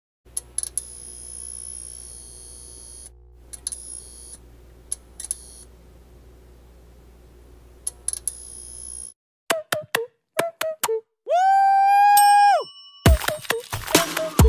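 Electronic glitch sound effects: a low steady hum broken by crackling clicks and high static hiss, cutting out at about nine seconds. Then a run of short electronic blips and a held synth tone that swoops up and holds for about a second, before electronic music starts near the end.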